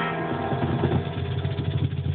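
Final chord of an archtop guitar ringing out over a fast roll of low hits on a cajon, closing a live acoustic song.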